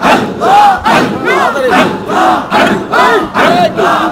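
A large congregation of men chanting Sufi zikir (dhikr) together, loud, rhythmic collective shouts repeating about twice a second.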